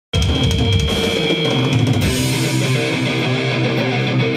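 Metalcore band playing live: electric guitars and a drum kit, loud, with a cymbal crash about two seconds in. The sound cuts in abruptly at the very start.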